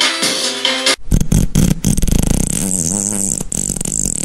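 Techno dance beat for about a second, then cut off abruptly and replaced by a long, low, buzzing fart sound effect whose pitch wavers up and down.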